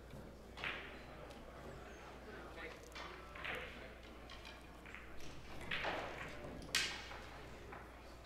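Faint, indistinct voices in a large hall, with one sharp click about seven seconds in.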